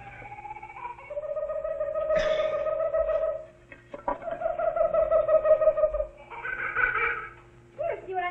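A man imitating the wailing call of a common loon: three long, wavering notes, the last one higher, over a low steady hum.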